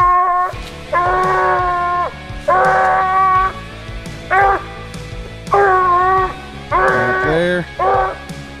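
A coonhound barking treed: a string of drawn-out, evenly pitched bawls, about one a second, each under a second long, as it stands against the trunk where it has a raccoon up the tree.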